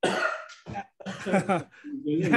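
A person's voice over a video-call line: a short breathy, noisy burst right at the start, then brief unclear voice sounds.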